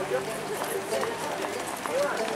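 Faint, unintelligible talk from a group of people walking, with a few footsteps on the road surface.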